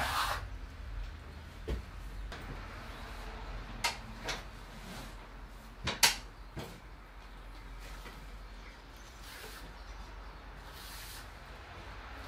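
Steel plastering trowel working over a stiffening multi-finish skim coat in the final trowelling: faint scraping with a few sharp clicks and knocks, the loudest about six seconds in.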